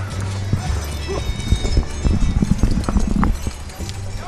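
Horses galloping on an arena's sand, hooves thudding in quick irregular knocks that come thickest about halfway through, over a steady low hum.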